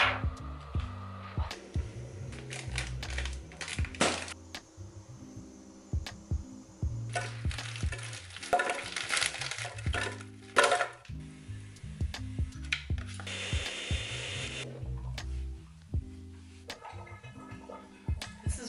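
Background music with a steady bass line over kitchen sounds: clicks and knocks, and an electric blender running briefly as it crushes frozen fruit and berries.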